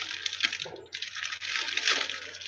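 A steady rushing hiss that breaks off for a moment just before a second in, over a faint low hum.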